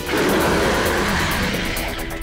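Cartoon speed-dash sound effect: a rushing whoosh that starts suddenly and fades near the end, over background music.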